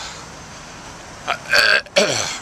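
A man coughing and clearing his throat in a couple of short, harsh bursts near the end, after a second or so of quiet outdoor background; the cough is from a chest infection.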